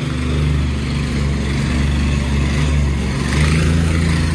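Engine-driven vibrating plate compactor running steadily as it compacts a freshly laid gravel drainage base.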